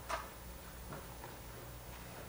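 Quiet room tone with a steady low hum and a few soft clicks: one clear click just after the start and two fainter ones about a second in.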